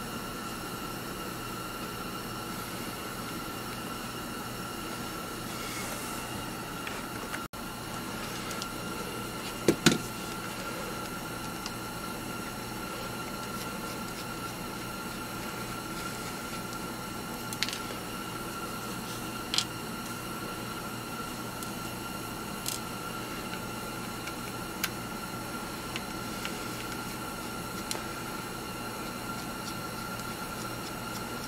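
Sparse small clicks and taps from a screwdriver removing small screws from a handheld radio's case as the radio is handled, over a steady hiss with a faint high steady tone. The loudest is a pair of clicks about ten seconds in.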